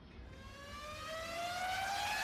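A rising sweep in the background music: one pitched tone climbing steadily in pitch and getting louder.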